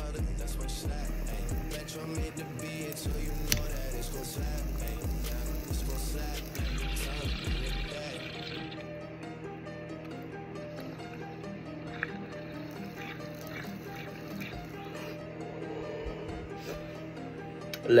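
Background music with a steady beat and a deep bass line that drops out about eight seconds in. Under it, water bubbles through a bong for a couple of seconds as a hit is drawn from it.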